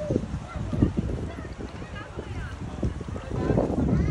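Wind buffeting the phone's microphone, with the voices of people around in the background.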